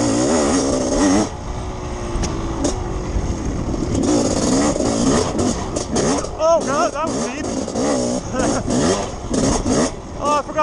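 Two-stroke dirt bike engine revving up and down as it is ridden hard along a dirt trail, with the revs rising and falling in quicker blips in the second half.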